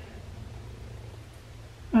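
Quiet room tone: a low, steady hum with no distinct events. A woman's voice starts right at the end.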